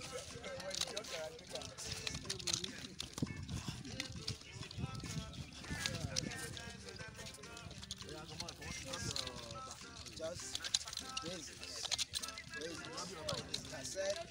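Nunchaku swung and passed from hand to hand, the sticks and their chain giving irregular clicks and knocks, with voices in the background.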